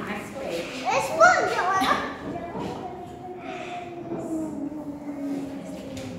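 Young children's voices: a high-pitched exclamation about a second in, then a long drawn-out vocal sound, with no clear words.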